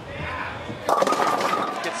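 Bowling ball rolling down a wooden lane, then about a second in crashing into the pins for a strike, a burst of pins clattering.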